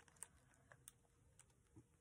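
Near silence, with a few faint, scattered ticks from the plastic packaging of a cling stamp set as fingers handle it.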